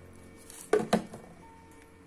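Two quick knocks of plastic bottles being handled and set down on a shelf, a fifth of a second apart, about three quarters of a second in, over soft sustained piano-and-violin background music.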